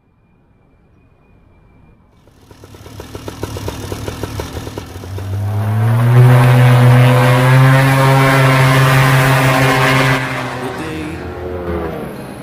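Two-stroke paramotor engine, a Vittorazi Moster, fading in and throttling up to a steady high-revving run, then easing back in pitch and loudness about ten seconds in.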